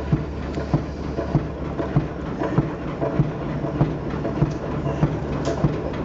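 Steady walking footsteps, about one and a half steps a second, over a low steady rumble.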